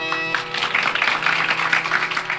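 The last held note of the concert's ensemble, with its steady pitched tones, cuts off about a third of a second in. Audience applause follows, a dense patter of clapping over a faint lingering drone.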